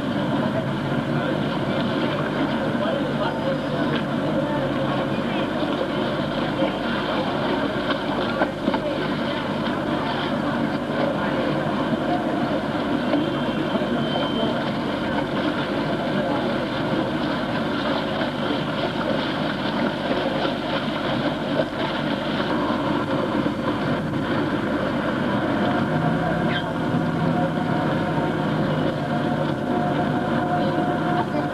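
Steady din of a busy city street: many people's voices mixed with traffic noise.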